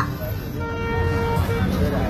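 A vehicle horn sounds one steady note for about a second, starting about half a second in, over crowd noise and a low traffic rumble.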